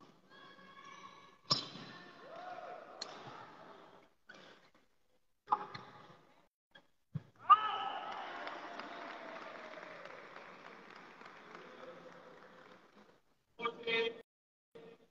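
Badminton rally: sharp racket strikes on the shuttlecock every couple of seconds, echoing in a large hall, with men's voices between them. The loudest strike comes about seven and a half seconds in, followed by several seconds of voices and echo that slowly fade.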